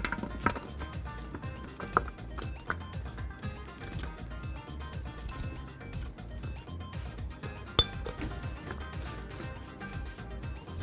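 Scattered clinks of a metal spoon against a glass mixing bowl and a metal baking tray as oiled carrot sticks are tipped out and spread, with one sharper clink near the end. Quiet background music runs underneath.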